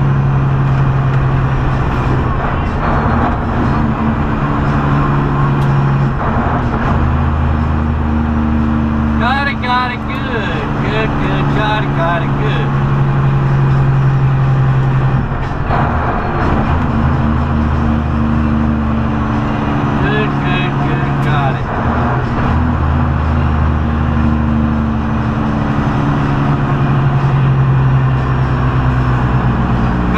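Semi-truck engine and road noise heard inside the cab while driving, a steady loud drone whose pitch steps between a higher and a lower note every several seconds. A voice is briefly heard twice, about ten and about twenty seconds in.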